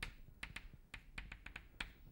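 Chalk writing on a blackboard: a faint, irregular run of about a dozen sharp taps and short scrapes as the chalk strikes and drags across the board for each stroke.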